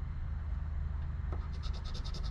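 Poker-chip scratcher scraping the coating off a lottery scratch-off ticket, in quick short strokes that start about one and a half seconds in.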